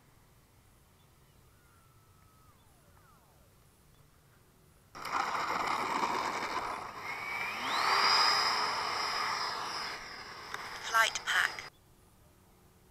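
Quiet for about five seconds, then the electric ducted-fan MiG-17 RC jet rolling on the runway on a touch-and-go: a sudden rush of fan noise, with a whine that climbs about two seconds later and holds high before easing. A brief voice callout comes near the end, and the sound cuts off abruptly.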